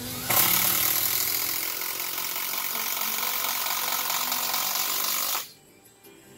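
Cordless power driver running under load for about five seconds, driving a screw into the wooden deck framing, then stopping abruptly.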